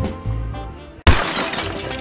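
Swing-style background music with saxophone fades out, then about a second in a sudden loud crash with a hissy tail that dies away over the next second, an edited-in sound effect.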